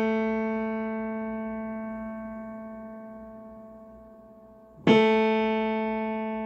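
An upright piano under tuning: a single note rings and slowly dies away, then the same key is struck again about five seconds in and rings on.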